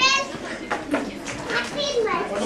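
Young children chattering and calling out over one another, with a high-pitched child's cry at the very start.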